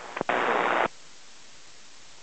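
Aviation VHF tower-frequency radio: a couple of faint clicks, then a half-second burst of static from a transmission keyed without speech, cut off sharply, followed by steady faint receiver hiss.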